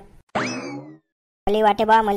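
A short cartoon sound effect: one quick upward swoop in pitch that slides back down over about half a second, a boing-like sting.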